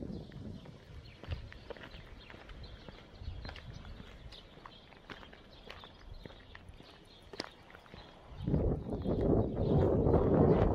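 Footsteps of a person walking on a paved street, a soft recurring tread. About eight and a half seconds in, a louder rushing noise of wind on the microphone comes up over them.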